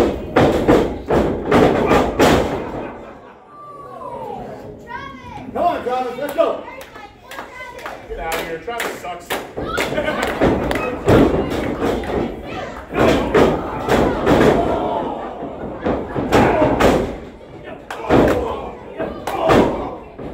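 Repeated heavy thuds and slaps in a wrestling ring as wrestlers strike each other and are slammed onto the ring mat, with shouting voices between the impacts.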